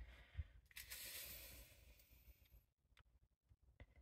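Faint rustle of a sheet of cardstock sliding across a craft mat, lasting about two seconds and stopping suddenly, followed by a few light taps as a clear acrylic stamp block is handled.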